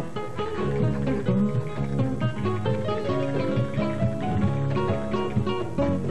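Instrumental guitar break in a Peruvian vals criollo: nylon-string acoustic guitars pick a quick melody over walking bass runs.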